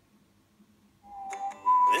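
Phone loudspeaker as a podcast begins to play: about a second of near silence, then a steady whistle-like note, followed by a slightly higher one.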